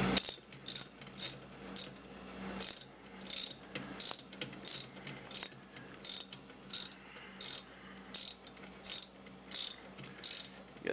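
Socket ratchet wrench clicking in short bursts, roughly one every half second, as it runs down the bolt that holds a top-load washing machine's agitator in place.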